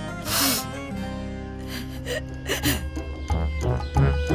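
A woman crying, gasping in sobbing breaths about half a second in and twice more later, over soft background music.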